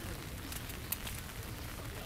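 Light rain falling, with scattered drops ticking irregularly over a steady hiss.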